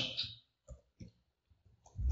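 A few faint, separate keystrokes on a computer keyboard as a word is typed, with quiet gaps between them.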